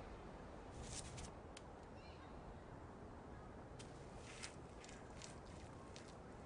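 Faint outdoor ambience: a steady low background hum with a few brief bird chirps and scattered short, sharp clicks, clustered about a second in and again between about four and five seconds.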